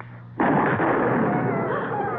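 A single gunshot sound effect about half a second in, with a long echoing rumble that slowly dies away. A thin, falling, whine-like tone runs over the tail near the end.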